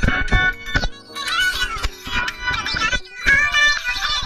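A pop song playing: a woman's singing voice over a steady beat.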